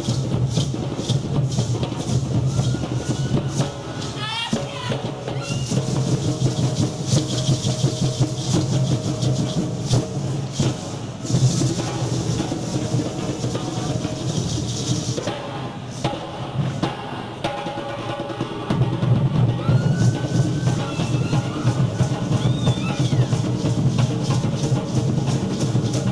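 A drum ensemble playing hand drums in a fast, driving rhythm for dance, the low drum tones thinning for a few seconds past the middle and then coming back fuller.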